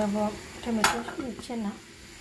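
A metal lid clanking down once onto an aluminium cooking pot, a sharp single knock a little under a second in.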